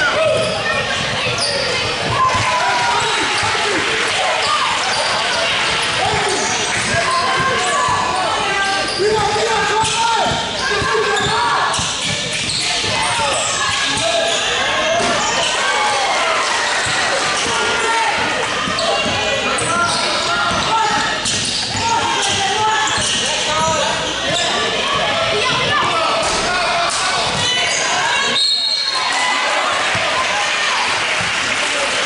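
Youth basketball game in a large gym: a basketball bouncing on the hardwood floor again and again, with many players and spectators shouting and talking over one another throughout.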